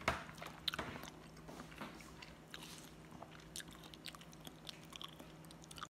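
A fork set down with a clink in a small bowl, followed by faint chewing with small, scattered mouth clicks.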